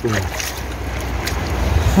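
Steady rush of shallow stream water with wind buffeting the microphone, and a few faint splashes as a hand washes water over a large wet stone.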